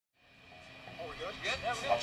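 Faint voices of people talking, rising in from silence about half a second in.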